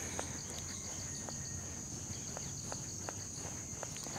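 Insects trilling steadily at a high pitch, with a few faint scattered clicks.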